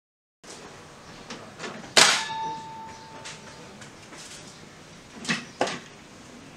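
Hyundai HAT12 air circuit breaker tripping open under a long-time-delay test, a loud metallic clack with a brief ringing tone about two seconds in. Two lighter knocks follow near the end.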